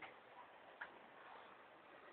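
Near silence, with a couple of faint short ticks.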